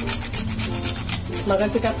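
Whole nutmeg rubbed back and forth on a small steel hand grater, rasping strokes about four a second, grating it onto the puran filling.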